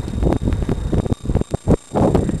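Wind buffeting the camera microphone while cycling, a loud irregular rumble with uneven thumps.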